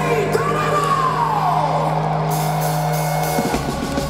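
Live heavy-metal band with symphony orchestra holding a sustained chord, one note rising briefly and then sliding slowly down over about two seconds. The held chord changes about three and a half seconds in.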